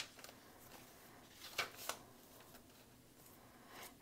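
Faint rustle of paper pages being turned in a handmade journal, with two brief soft paper flicks about a second and a half in.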